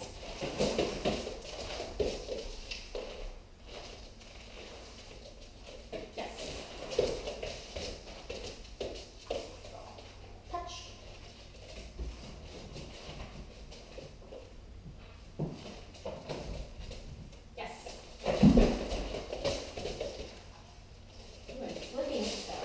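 A dog moving about on a carpeted floor, with scattered soft knocks from its feet and the bowl, and a quiet voice now and then.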